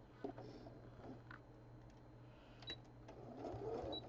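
Electric sewing machine running slowly as it stitches a seam through layered fabric scraps: a steady low hum with a few light clicks, picking up speed near the end.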